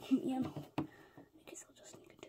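Soft whispering, then a few light clicks of a plastic toy figurine being picked up off a tabletop.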